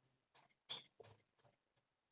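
Near silence with a few faint, short squeaks and strokes of a marker writing on a whiteboard, the loudest a little under a second in.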